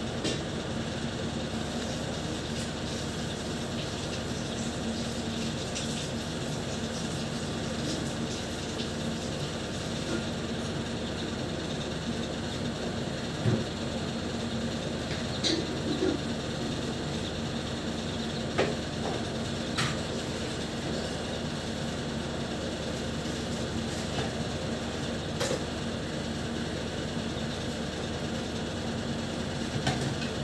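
Steady mechanical hum with a constant low drone, broken by a few brief sharp clicks in the second half.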